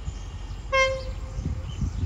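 QSY diesel-electric locomotive 5220 sounds one short toot on its horn about two-thirds of a second in, which trails off, over the low rumble of the approaching train.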